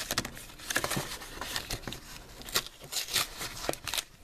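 A Pokémon card blister pack being pulled open by hand: the clear plastic blister and its backing crinkle and crackle in irregular sharp snaps.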